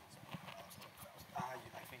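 Faint scattered clicks and taps of laptop keyboards, with a brief spoken "I think" about one and a half seconds in.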